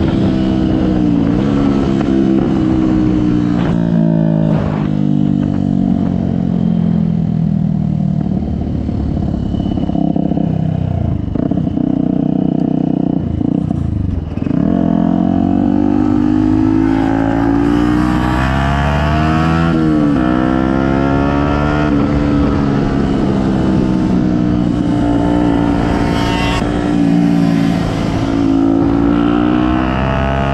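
Small motorcycle engine heard from the rider's seat while riding. Its pitch climbs, drops sharply, then climbs again, over and over, as the bike revs up through the gears and backs off.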